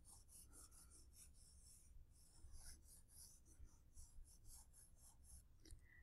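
Faint scratching of a crayon scribbled rapidly back and forth on sketchpad paper, about four strokes a second, colouring in a shape; the strokes stop near the end.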